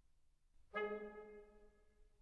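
Film score music: after a very quiet start, a single held brass note enters suddenly about two-thirds of a second in and fades away over about a second.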